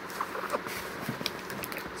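Hands handling a cardboard shipping box: a few short light taps and scrapes of cardboard as the box is tipped over onto its side on a table.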